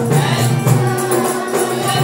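A group of men chanting together in unison over frame drums keeping a steady beat with a jingling, tambourine-like edge.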